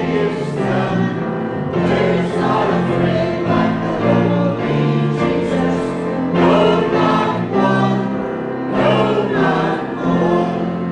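Small mixed church choir of men and women singing a hymn together, holding long notes that change every second or so.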